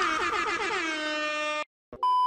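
Comedic editing sound effect: a horn-like tone that slides down in pitch, holds, then cuts off abruptly about one and a half seconds in, followed by a moment of silence.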